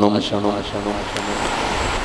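A man's voice over a microphone trails off. A steady rushing noise then fills the pause for about a second before the speech resumes.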